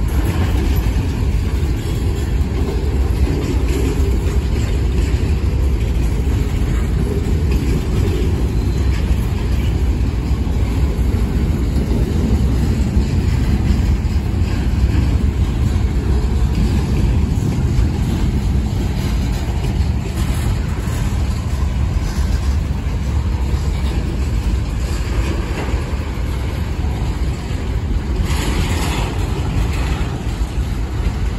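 Freight cars of a long manifest train rolling past, a steady low rumble of steel wheels on rail. A brief sharper noise comes near the end.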